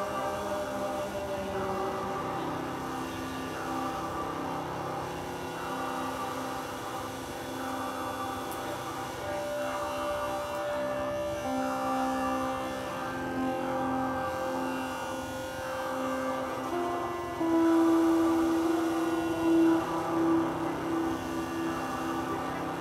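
Live drone music: layered sustained tones that shift slowly in pitch, with a louder held tone entering about three-quarters of the way through.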